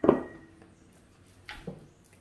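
Tarot deck handled during shuffling: a sharp slap or snap of the cards that dies away quickly, then a softer one about a second and a half later.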